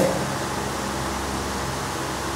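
Steady room background noise: an even hiss with a low hum underneath, unchanging throughout.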